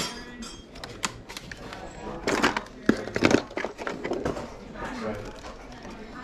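Small plastic objects clattering and rattling, with pens and markers being rummaged in a crowded desk drawer. There are scattered clicks throughout and two louder bursts of clatter in the middle.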